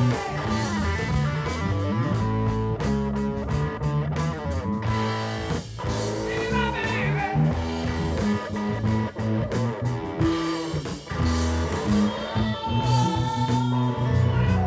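Blues-rock band music with electric guitar, drums and a Fender Precision electric bass playing a busy, moving bass line. Bent guitar notes come in about halfway through.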